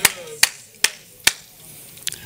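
Four sharp, evenly spaced strikes, a little over two a second, each a single clean crack like a clap or a knock.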